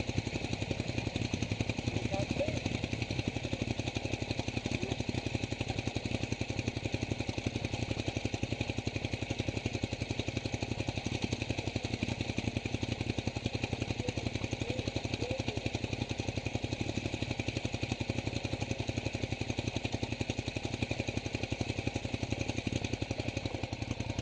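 Motorcycle engine idling steadily, a fast, even run of firing pulses that keeps going unchanged.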